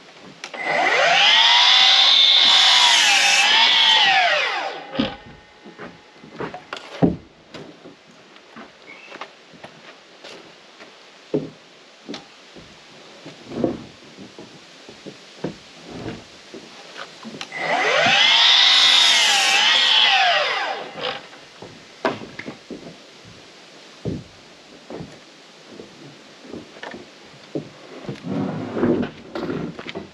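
Miter saw making two crosscuts through boards about fifteen seconds apart: each time the motor spins up to a whine, drops in pitch as the blade bites the wood, then winds down. In between and near the end, knocks and clatter of boards being moved and set down.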